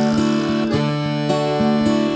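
Instrumental folk music: acoustic guitar accompaniment playing on between sung lines, with no singing.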